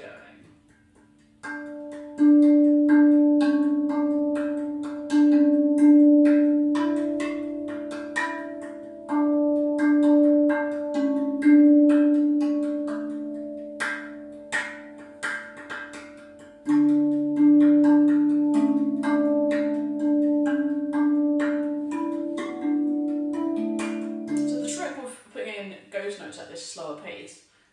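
RAV steel tongue drum played by hand: long ringing notes with quick, light finger taps (ghost notes) filling in a groove between them. A deeper bass note joins about two-thirds of the way in.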